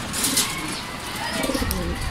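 Domestic racing pigeons cooing in their loft.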